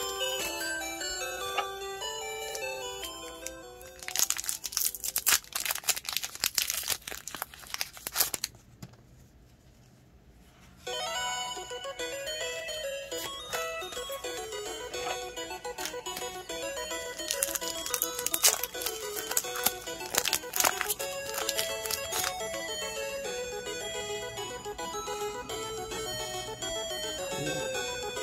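Background music with a steady melody, over which the foil wrapper of a trading-card booster pack crinkles and tears for about four seconds. A short near-silent gap follows, then the music returns and the wrapper crinkles again for a few seconds past the middle.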